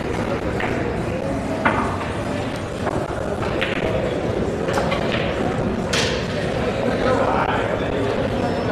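Chatter of many voices in a billiard hall, with about half a dozen sharp clicks of carom balls striking each other on the tables around.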